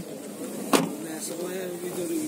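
A single sharp knock about three-quarters of a second in, over a faint voice in the background.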